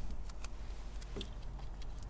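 Faint, scattered small clicks and rustles of hands wrapping electrical tape around a wire splice, over a steady low hum.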